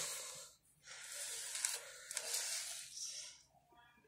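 Handling noise: hissy scraping and rustling as a chainsaw is gripped by its handle and shifted about on cardboard, in a few uneven stretches.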